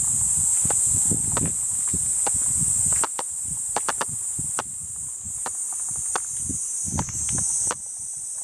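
A steady high-pitched insect chorus, dipping a little about three seconds in, over the irregular thuds and scuffs of footsteps walking along a garden path close to the microphone.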